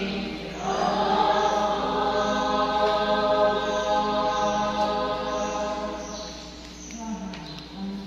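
A choir singing a slow, chant-like hymn in long held notes, growing louder about a second in and falling away near the end.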